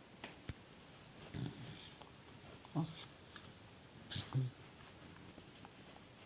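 Small terrier waking and stretching in its bed, giving a few short, low grunts, the loudest about four seconds in.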